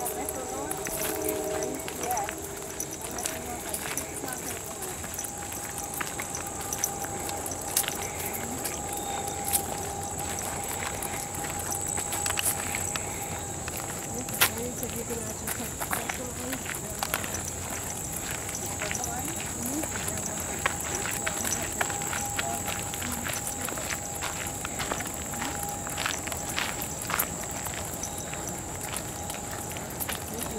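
Footsteps of several hikers on a dirt-and-gravel trail, an irregular patter of short crunches and scuffs, over a steady high-pitched whine.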